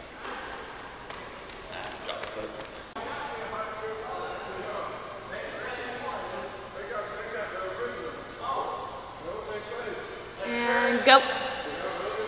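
Sneaker footfalls slapping on a gym floor as a sprinter runs, with voices echoing in a large hall. Near the end a voice calls "go" with one sharp smack.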